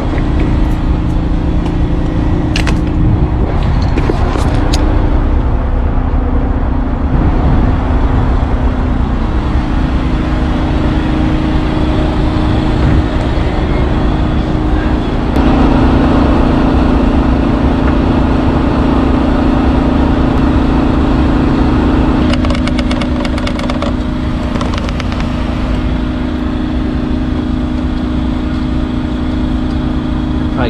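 An engine running steadily with a deep drone, louder from about halfway through. A few sharp clicks come early on and a quick run of clicks and knocks comes later.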